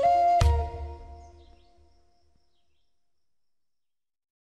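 Native American flute music ending: a held flute note over a low rumble cuts off about half a second in, and its reverberation dies away over the next two seconds.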